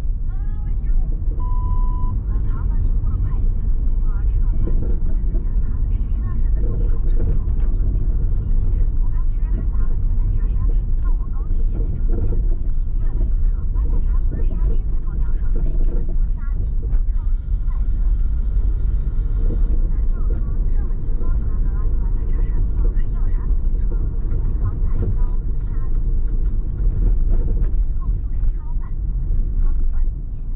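Car driving through city streets: a steady low rumble of engine and tyre noise, with a short electronic beep about two seconds in.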